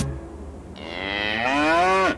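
A single long drawn-out call, rising steadily in pitch and growing louder, then cut off suddenly at the end.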